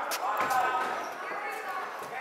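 Basketball dribbled on a hard gym floor, a few sharp bounces ringing in the hall, over players' and spectators' voices.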